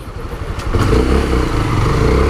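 Honda CB 300 single-cylinder engine running under the rider, getting louder with its note rising from under a second in as the bike accelerates.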